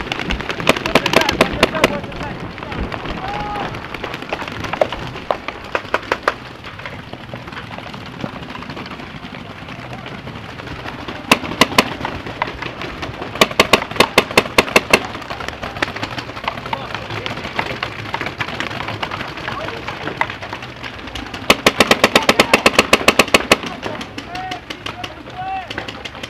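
Paintball markers firing in rapid bursts of shots with short pauses between them. The longest, densest burst comes near the end.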